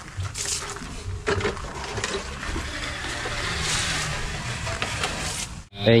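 Soil-guard termite solution splashing from a plastic bottle onto a bed of gravel, a steady hiss of liquid hitting stones that cuts off suddenly near the end.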